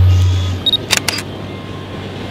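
A deep low hum fades out within the first half second. About a second in come a short high beep and three quick clicks like a camera shutter.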